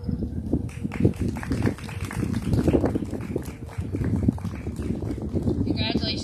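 Wind buffeting an outdoor microphone: an uneven, gusty rumble with irregular knocks.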